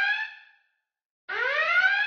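Electronic whooping tone, a rising glide like an alarm whoop, heard twice with a short dead silence between.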